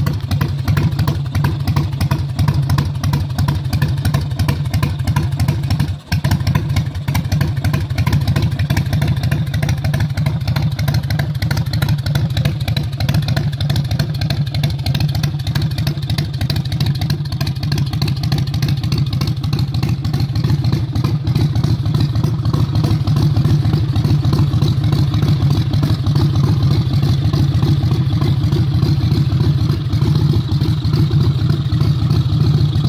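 Rat rod motorcycle's V-twin engine running steadily with a rapid, even exhaust pulse. The sound drops out for a moment about six seconds in.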